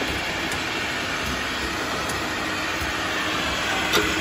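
Double-head powder filling machine and its can conveyor running, a steady mechanical noise, with a sharp click near the end.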